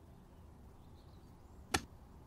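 A single sharp blow from a long-handled tool swung overhead and brought down, striking once near the end.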